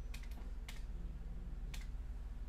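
A few separate computer-keyboard keystrokes, sharp clicks spaced irregularly over two seconds, over a steady low hum.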